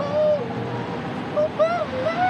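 A wordless high-pitched tune whose notes glide and waver up and down without a break.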